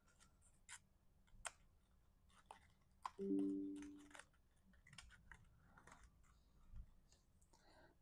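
Faint clicks and rustles of cardstock slice-card pieces being slotted together and handled, with a short hummed sound from the crafter about three seconds in.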